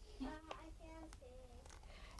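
Faint, high-pitched voices of young children talking softly in the background, with a couple of light clicks.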